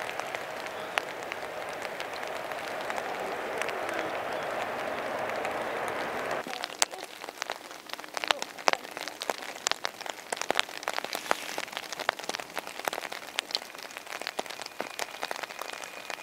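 Steady rain with the distant roar of a departing jet airliner climbing away, which cuts off abruptly about six seconds in. After that come sharp raindrop taps close to the microphone over quieter rain.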